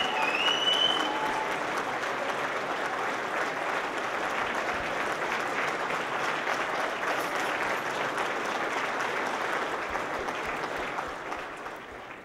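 Audience applauding, with a short whistle near the start; the clapping eases off near the end.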